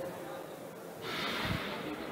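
Faint starting signal for an indoor 400 m heat about a second in, followed by a steady hiss of hall noise, with a small low thump about half a second later.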